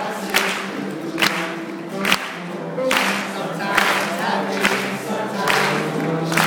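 Live folk band and audience singing together in chorus over strummed acoustic guitars, with a sharp clap on every beat, a little under a second apart.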